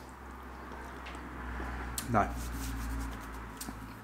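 A man says one drawn-out "no" about two seconds in. Before it there is a pause with only a low, steady rumble and faint room noise, and the rumble runs on under the word.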